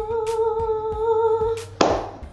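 A woman's voice humming one long held note with a slight wobble. It stops near the end and is followed by a short breathy rush.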